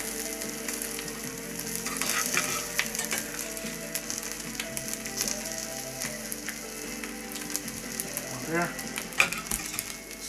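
Olive oil sizzling steadily in a stainless steel frying pan holding tilapia fillets, tomatoes and courgettes, with scattered light clicks and scrapes from a metal fish slice.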